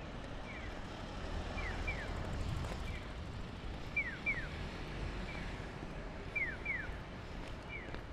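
Japanese pedestrian crossing signal chirping: pairs of short, falling 'piyo' chirps, repeating about once a second, with fainter answering chirps between them. Low, steady street traffic rumble underneath.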